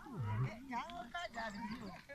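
People's voices talking and calling out, with several short utterances that come and go.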